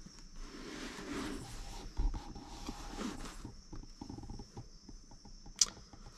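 Crickets chirping steadily in the background. Over them comes a soft rustling, breathy noise for the first few seconds, then a scatter of small clicks and a sharp tick near the end.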